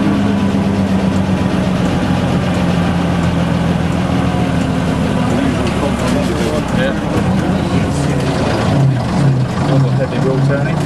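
A vintage bus engine runs steadily, with people's voices talking over it, more clearly near the end.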